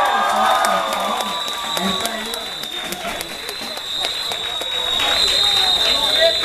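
Audience cheering and clapping, with voices shouting loudest in the first second or so, over a steady high-pitched whine from the PA system.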